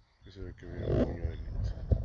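A man speaking Spanish over a low, irregular rumble of wind buffeting the microphone.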